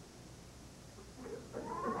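Quiet comedy-club room for about a second and a half, then audience laughter breaks out and builds near the end.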